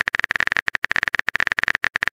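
Typing sound effect for a text message being written: a fast run of short, sharp clicks, more than a dozen a second.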